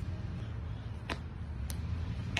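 Low, steady rumble of wind on a phone microphone, with two sharp clicks, one about a second in and one near the end.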